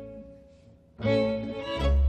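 Folk string ensemble of two violins, guitar and double bass playing: a phrase dies away to a brief near-silent pause, then the instruments come back in strongly about a second in, with a deep double-bass note entering near the end.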